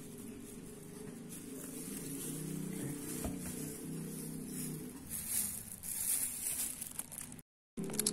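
Muffled background music with shifting notes, joined by rustling in the second half, and the sound cuts out completely for a moment near the end.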